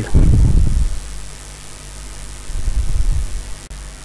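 Low rumbling handling noise from the dismantled cassette Walkman being held and moved close to the microphone, loudest in the first second, with a second softer stretch about two and a half seconds in. It breaks off abruptly shortly before the end.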